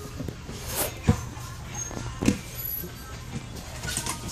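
Two sharp thumps, about a second in and again a little past two seconds, as a large inflatable exercise ball is batted by hand, over music in the background.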